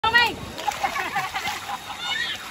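Water splashing and churning as a dense school of fish thrashes at the surface. A child's loud high-pitched squeal comes at the very start, followed by short excited children's cries.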